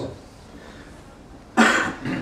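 A single short cough about a second and a half in, after a lull of quiet room tone.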